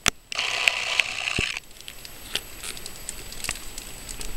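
Wood campfire crackling, with scattered sharp pops. A louder rustling hiss runs from just after the start to about a second and a half in.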